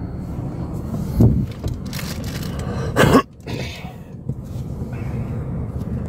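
Steady low rumble inside the cabin of a parked Ram van, with a couple of short knocks and rustles about a second in and again about three seconds in.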